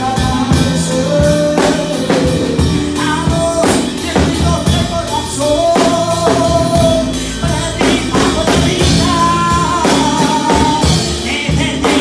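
Live worship music: a woman singing into a handheld microphone, amplified, over a steady drum kit beat, her voice holding long notes.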